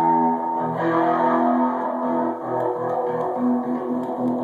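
Custom electric guitar with two humbucking pickups being strummed: chords and held notes ring out, with a new chord struck about a second in.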